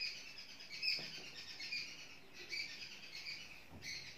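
Small birds chirping repeatedly in the background, faint, with a soft tap about a second in.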